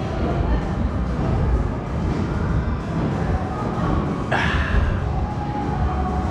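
Background music over the steady noise of a busy restaurant, with one short sharp noise about four seconds in.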